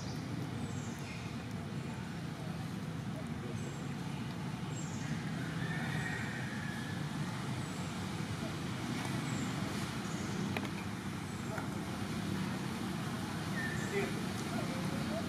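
Outdoor background: a steady low rumble with faint distant voices, and brief high chirps that come every second or so.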